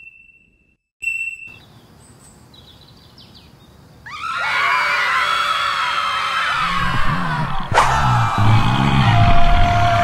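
A short electronic beep, then a faint hum; about four seconds in, a crowd of voices starts shouting and screaming together, with music coming in underneath and a sharp click partway through.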